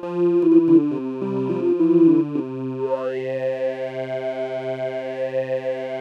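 iTuttle synthesizer app on an iPad playing its 'Talking Pad' preset: sustained pad chords that change quickly over the first couple of seconds, then settle into one held chord with a rising sweep about two and a half seconds in. A low note pulses under it about twice a second.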